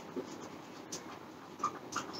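Marker pen writing on a whiteboard: faint scratchy strokes, with two brief squeaks near the end.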